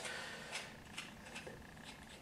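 A few faint, small clicks from the freshly coped wooden base shoe moulding being handled.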